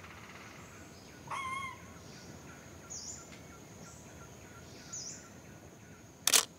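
Forest wildlife ambience: one short wavering pitched call about a second and a half in, then three short high chirps spaced about a second apart, over a faint steady high hiss.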